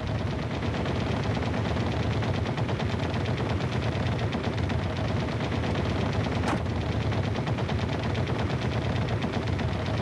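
Rapid, continuous fire from a bank of 12.7 mm (.50 calibre) machine guns in an F-86 Sabre's nose: one long unbroken burst, with a single sharper crack about six and a half seconds in.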